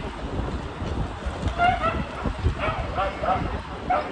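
A small dog yapping: a run of short, high barks starting about a second and a half in and repeating several times. Low street and traffic rumble runs underneath.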